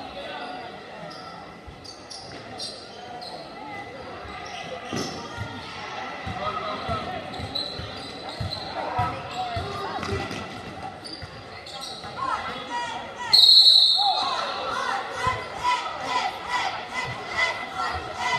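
A basketball bouncing on a gym's wooden floor during play, under spectators' voices echoing in the large hall. About 13 seconds in comes a short, loud, shrill blast of a referee's whistle, followed by louder crowd voices.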